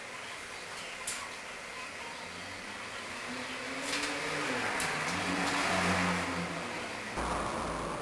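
A motor vehicle's engine passing by, growing louder through the middle and then fading, over faint background noise, with a single click about a second in.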